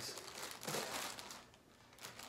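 Clear plastic poly bag crinkling as it is squeezed and handled, with small crackles, dying away near the end.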